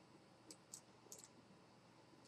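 A few faint computer-mouse clicks, about four in the space of a second, over near-silent room tone.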